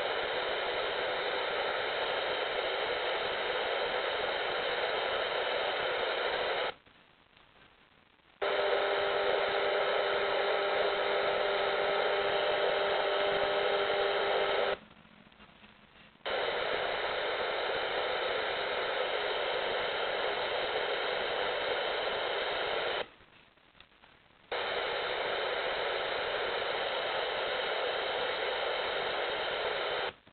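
FM radio speaker playing steady static hiss from weak or empty frequencies. It mutes abruptly three times for about a second and a half each, as the radio switches to the next preset. In the second stretch a few steady tones sound through the hiss.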